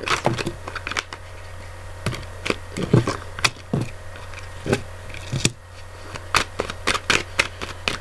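Tarot cards being handled and laid down on a table: an irregular string of sharp clicks and taps, with a short pause a little past the middle, over a steady low hum.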